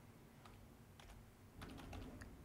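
Faint keystrokes on a compact wireless computer keyboard: a few scattered clicks, coming closer together near the end.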